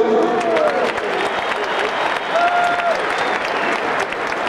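Large stadium crowd applauding a player's introduction over the public-address system.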